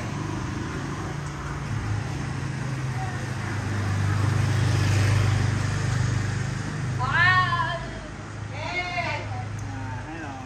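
A motorbike engine runs with a steady low note that swells in the middle. Two short, high-pitched calls in a child's voice come at about seven and nine seconds.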